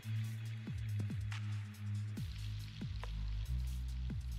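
Background electronic music with deep held bass notes and a beat of thumps that drop quickly in pitch.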